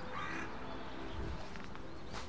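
Quiet outdoor background with a faint, distant bird call.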